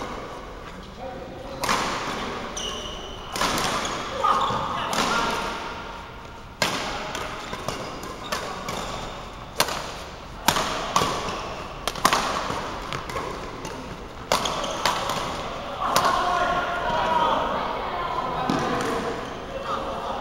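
Badminton rally: rackets striking the shuttlecock in a string of sharp cracks at irregular intervals, with brief squeaks of court shoes between shots.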